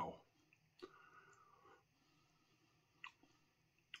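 Near silence broken by a few soft mouth clicks and a faint breathy exhale about a second in, from a man feeling the heat of a superhot chilli sauce.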